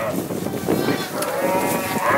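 A sheep bleating: one long call that starts under a second in.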